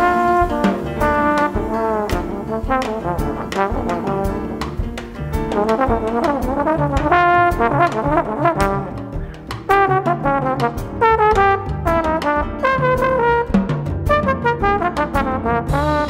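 Jazz trombone solo, a melodic line of short and held notes played over a big band rhythm section with bass and drums, in a Latin-jazz groove.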